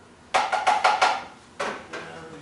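A cooking utensil knocked against a frying pan on the stove: a quick run of about five ringing knocks, then one more a second later.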